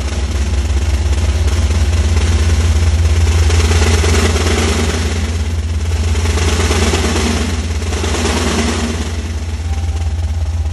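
Snare drum played with sticks in a sustained fast roll that swells louder and softer several times, over a deep steady low rumble.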